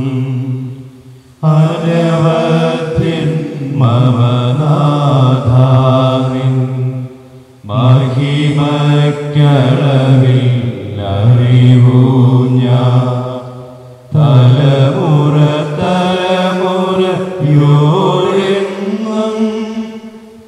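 A man's voice chanting a liturgical prayer in long, sustained sung phrases of about six seconds each, with brief pauses for breath between them.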